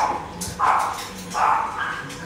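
A dog barking repeatedly: three short barks about three-quarters of a second apart.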